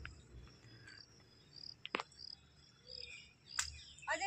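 Faint high-pitched insect chirping in short repeated notes, with two sharp snaps, one about two seconds in and one near the end.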